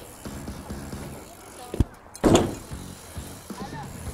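BMX bike riding over skate-park asphalt, with a sharp knock a little before the middle and a louder burst of noise just after it.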